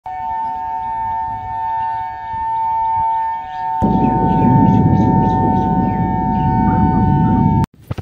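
A steady, siren-like two-note tone sounds throughout; about four seconds in, a loud low rumble joins it, and both cut off suddenly just before the end.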